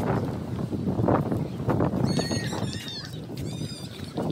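Footsteps at a walking pace on a concrete walkway, about two a second. From about halfway through, a high, wavering chirping call sounds twice.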